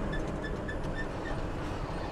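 Truck cab at highway speed: steady engine and road rumble, with a short high-pitched chirp repeating about four times a second that fades out a little past halfway.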